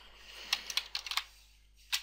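Typing on a computer keyboard: a quick run of key clicks about half a second in, then a pause with one or two faint clicks near the end.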